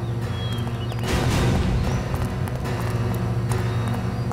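Tense background music: a steady low drone with a swell starting about a second in, and a regular knocking beat.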